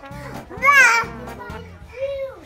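A toddler's high-pitched squeal that rises and falls in pitch, loudest about half a second to a second in, with a softer cry just before it, over background music.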